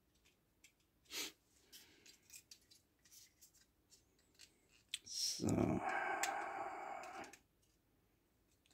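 Red plastic model parts being handled and fitted together by hand: a few light clicks and taps, then about two seconds of plastic rubbing and scraping as pieces are pressed together.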